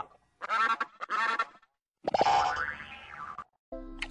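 A string of short, distorted cartoon-style sound effects, with bursts of pitched, warbling sound cut off abruptly by brief silences. One burst, about two seconds in, has sliding pitch.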